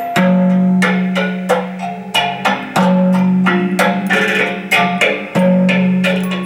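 Improvised music on a homemade sanza (thumb piano): a low plucked note rings on and is struck again about every second and a bit, with shorter, higher plucked notes between.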